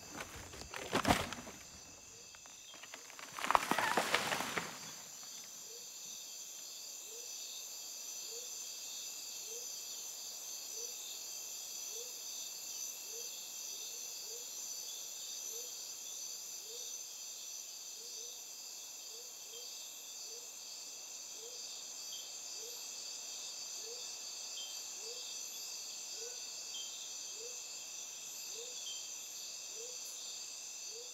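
Steady high-pitched chorus of crickets and other insects, with a faint short rising chirp repeating a little more than once a second. Two brief louder noises stand out in the first five seconds: a sharp one about a second in and a louder, rougher one lasting about a second around four seconds in.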